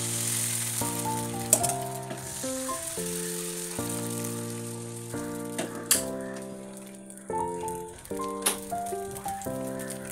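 Palappam batter sizzling in a hot appam pan as it is swirled, with a few sharp clicks, over background music of held keyboard chords that change every second or two.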